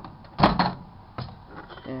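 Microwave oven door unlatched and swung open: a sharp clunk about half a second in, then a lighter knock about a second later.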